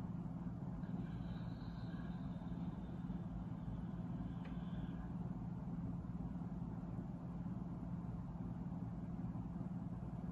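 Steady low mechanical hum with a rumble underneath, and a faint high tone from about one to five seconds in.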